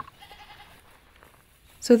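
Quiet outdoor background with a faint, short animal call in the first half second.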